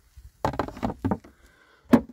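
White plastic pest-management tray of a Flow Hive 2 being handled: a run of light knocks and clatters, then one sharp knock near the end as it is set down.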